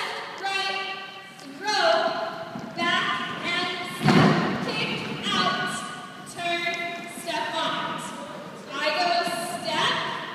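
A single heavy stomp on a wooden floor about four seconds in, the loudest sound, over a voice holding a run of long, steady notes.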